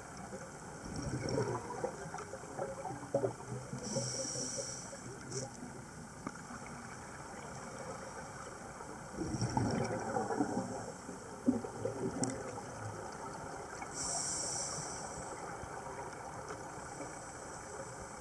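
Underwater sound of scuba regulator breathing: bursts of exhaled bubbles rumbling and gurgling, about a second in and again near the middle, and a short high hiss of inhalation twice, about four seconds in and again near fourteen seconds.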